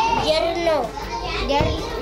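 Young children's voices speaking together.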